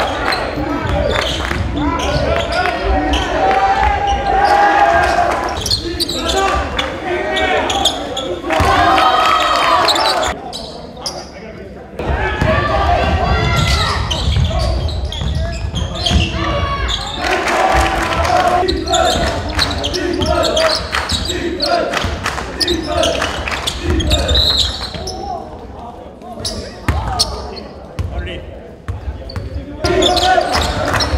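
Basketball being dribbled on a hardwood gym floor during live play. Repeated bounces ring in the large hall, mixed with voices from the players and people courtside calling out.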